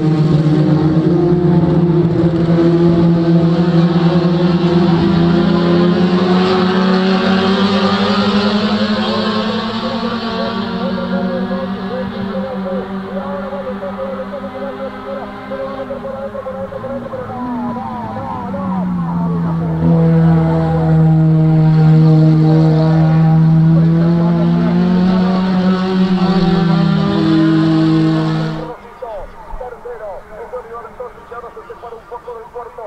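Racing car engines running at high revs, their pitch sweeping slowly as the cars pass, with a drop and climb in pitch a little past halfway like a lift and gear change. The sound cuts off abruptly near the end.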